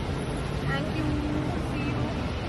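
Steady rumble of road traffic and idling cars, with brief snatches of voices partway through.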